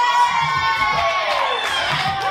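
Audience cheering and whooping, many voices at once, dying away near the end.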